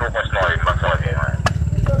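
A person talking over a steady, evenly pulsing low rumble from a running motor.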